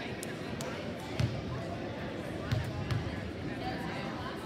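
Basketball bounced three times on a hardwood gym floor, each bounce a low thump with the hall's echo: a free-throw shooter's dribbles before the shot. Background crowd chatter runs underneath.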